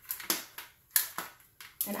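Sharp plastic clicks and knocks, several in two seconds with the loudest about halfway, as the white plastic lid and motor attachment of a Pampered Chef ice cream maker are handled.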